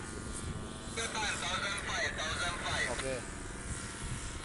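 Distant paramotor engine and propeller droning steadily overhead, with faint voices talking partway through.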